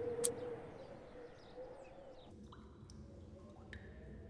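Animated-film soundtrack: a bright click just after the start, then the score fading out into faint ambience with a few short, high chirps and light clicks in the second half.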